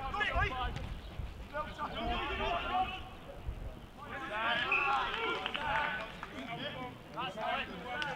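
Men's voices shouting and calling across a rugby pitch during open play, in short bursts with a brief lull midway.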